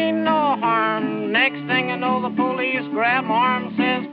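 Old-time string-band music from a 1931 recording: guitar chords under a lead melody line that bends and slides in pitch, with no words sung. The sound is narrow and thin, with no highs, as on an early 78 rpm record.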